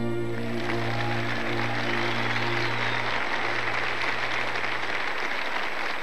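The band's last chord, with electric guitar, rings out and fades over about three seconds as audience applause rises and carries on.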